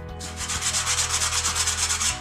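Hand sanding of a curved wooden chair element: fast, even back-and-forth rubbing strokes of abrasive on wood, starting a moment in.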